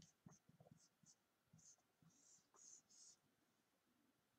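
Faint scratching of a felt-tip marker on a white sheet: a run of short strokes writing a word, then three longer strokes about two to three seconds in as a box is drawn around it.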